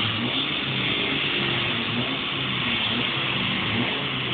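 Honda Integra Type R on a rolling-road dyno, running at a steady speed with a constant rush of noise and no revving.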